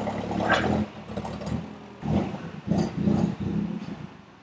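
Forklift engine running with a steady low hum that drops away about a second in, followed by several uneven, shorter surges.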